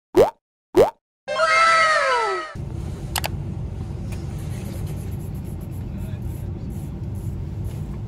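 A logo sound effect: two quick rising 'bloop' plops, then a bright chime of falling tones. About two and a half seconds in it gives way to the steady low rumble inside a coach bus.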